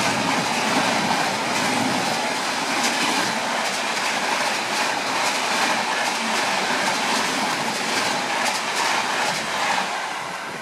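Shatabdi Express passenger coaches passing close by at speed on the adjacent track: a loud, steady rushing noise with the wheels clacking over rail joints.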